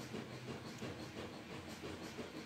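Quiet room tone: a faint steady low hum with light hiss.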